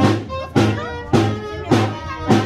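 Brass band music with held horn notes over a steady percussion beat of just under two strikes a second.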